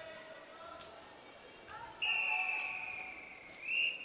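A referee's whistle sounds one long steady blast from about halfway through, fading slowly, then swells briefly near the end. At a swimming final this long whistle is the signal for swimmers to step up onto the starting blocks.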